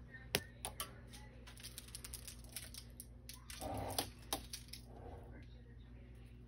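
Scattered sharp clicks and light taps, the loudest just after the start and near four seconds in, over a low steady hum.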